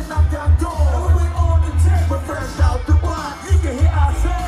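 Live music played over a concert sound system: a heavy bass beat under a vocalist on the microphone.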